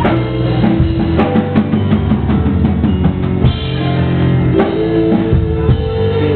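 Live keyboard-and-drums rock music: a Yamaha Motif synthesizer keyboard plays held chords and notes over a drum kit keeping a steady beat.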